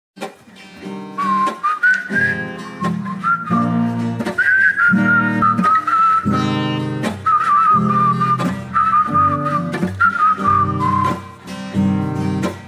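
Acoustic guitar strumming chords under a whistled melody that wavers up and down: the instrumental introduction to a bard song.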